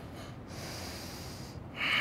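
A person breathing through the nose during a seated yoga twist: one long airy breath of about a second, then a short breath near the end.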